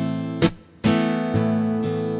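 Steel-string acoustic guitar strummed in a slow rhythm. A ringing chord is cut off by a short, sharp muted stroke about half a second in, then a new chord is struck just under a second in and rings on.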